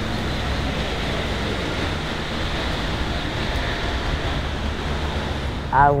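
Steady city street background noise: a low traffic rumble and hiss. A woman's voice begins near the end.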